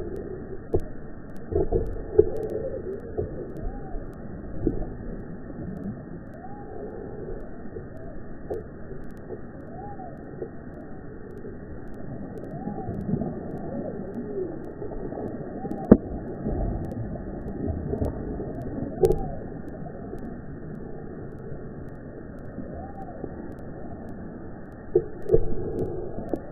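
Pitched-down, slowed audio of a bass striking a topwater frog lure: deep, drawn-out watery sloshing and splashing with slow wavering tones, and a sharp knock about two-thirds of the way through.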